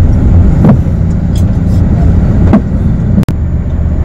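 Steady low rumble of a road vehicle in motion, heard from inside its cabin. The sound cuts out for an instant about three quarters of the way in.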